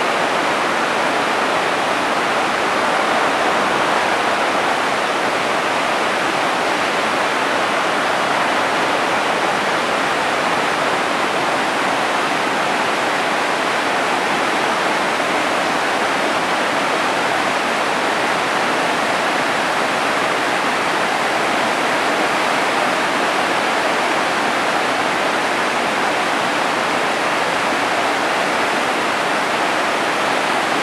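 Whitewater rapids of a mountain river rushing over boulders: a loud, steady rush of water that does not change.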